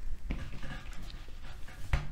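Faint rubbing as a handwritten word is wiped off a whiteboard, with a low thump just after it starts and a sharp click near the end.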